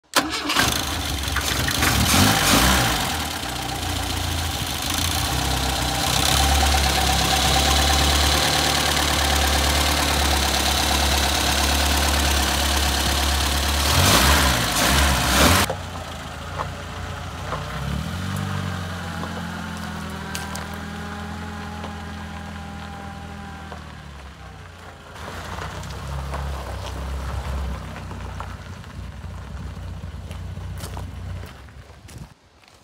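Volvo PV sport's twin-carburettor four-cylinder engine starting and idling, revved briefly about two seconds in and again near the middle. Then it is heard more quietly as the car drives slowly, running steadily for several seconds before fading.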